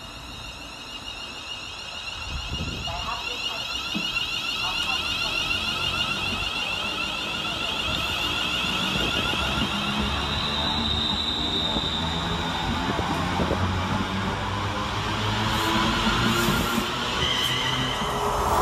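Class 350 Desiro electric multiple unit pulling away from the platform and accelerating, its traction equipment whining in several steady high tones with climbing notes above them, over a low rail rumble. It grows steadily louder as the carriages pass.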